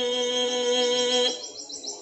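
A man's voice holds one long, level drawn-out vowel in Quran recitation, the elongated 'aa' of a word like an-naas, and breaks off about a second and a quarter in. Over its end and after it, a small bird chirps in a quick run of short, high notes in the background.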